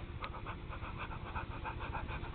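A baby's quick, excited panting breaths, a rapid even run of short huffs, several a second.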